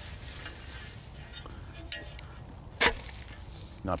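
A spade chopping once into a daylily root clump on a plastic tarp: a single sharp crunch about three seconds in, with a few faint rustles and clicks before it.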